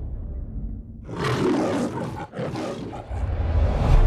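Film-trailer sound effects: a low rumble, then from about a second in a loud, noisy roaring rush, broken twice by brief dips, over a deep rumble that swells near the end.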